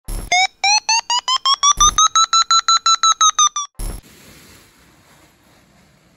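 Paragliding variometer climb tone: a fast run of electronic beeps, about eight a second, rising in pitch and then easing slightly, the sound that signals rising air. Three loud short thumps break in, the last ending the beeping about four seconds in.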